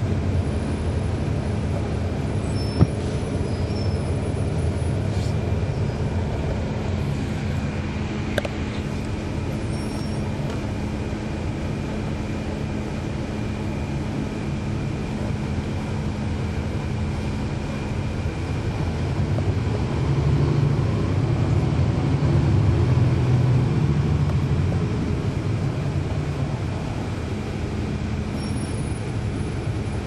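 2012 NABI 40-SFW transit bus with a Cummins ISL9 diesel engine, running steadily as the bus drives. A steady hum stops about 18 seconds in. The engine grows louder from about 20 seconds in, as under acceleration, then eases off. A sharp click comes about 3 seconds in.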